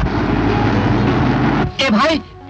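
Car engine running with road noise as the car drives along, cutting off suddenly about a second and a half in, when a man starts talking.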